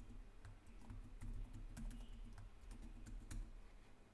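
Computer keyboard keystrokes: a faint, irregular run of key presses as a password is typed.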